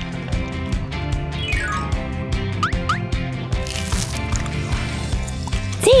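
Upbeat background music with a steady beat, with a few short whistle-like squeaky glides in the middle: one falling, then two quick rising ones.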